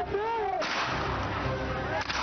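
A sudden loud outdoor blast about half a second in, its noise trailing on for about a second, amid shouting voices.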